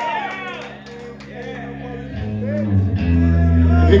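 A rap song's backing track starting at a live show: after a brief lull, deep bass notes come in about two seconds in and the music grows louder.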